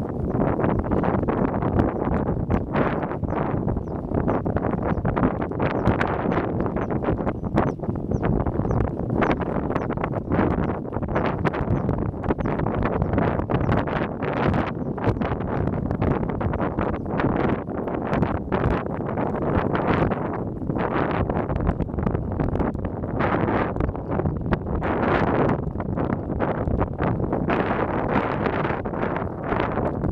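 Wind buffeting the microphone: a loud, continuous rumble with many short irregular gusts and thumps.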